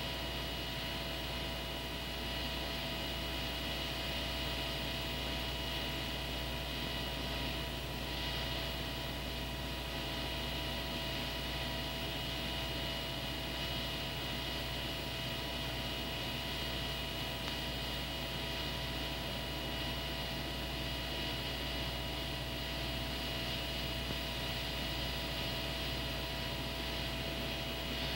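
A steady, unchanging hum with faint hiss and several constant tones, with no distinct events.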